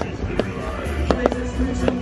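Aerial fireworks going off in a string of about four sharp bangs over the loud show soundtrack music.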